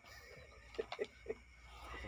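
A man laughing: a quick run of three or four short 'ha' sounds a little under a second in.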